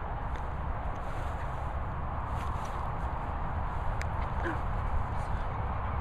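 Steady rumbling noise of wind and handling on a handheld microphone, with a few faint ticks.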